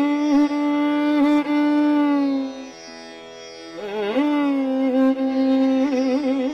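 Hindustani classical violin: a long bowed note held steady, a brief dip in level a little before the middle, then a quick upward slide into another held note, with the pitch wavering in fast ornaments near the end.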